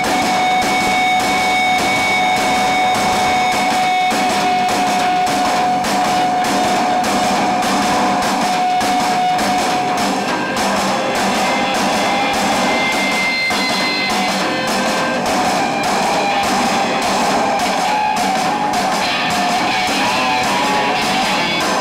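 Rock band playing live: distorted electric guitar and bass over a steadily driving drum kit, with a long held high tone through the first half. The recording is loud, with little deep bass.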